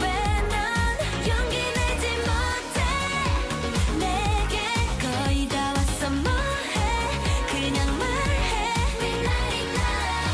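K-pop dance track playing for a medley dance, with female singing over a heavy, steady beat.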